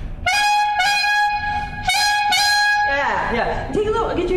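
Clarinet playing a short run of repeated, separately tongued notes on one high pitch, in two groups, demonstrating articulation. A voice starts speaking near the end.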